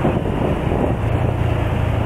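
Wind rushing over the microphone of a moving motorcycle, with a steady low engine rumble underneath.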